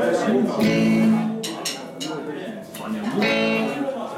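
Live band guitars strumming a few short chords through the amplifiers, with voices over them.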